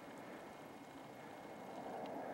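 Faint, steady outdoor background hiss with no distinct event.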